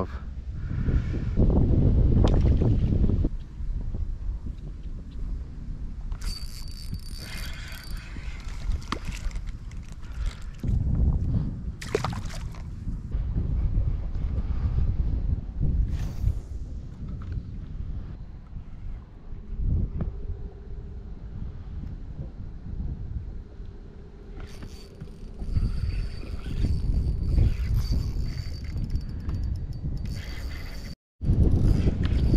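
Wind rumbling on the microphone on an open fishing boat, with water lapping at the hull; the rumble is strongest in the first few seconds. Two short spells of higher mechanical whirring come a few seconds in and again near the end.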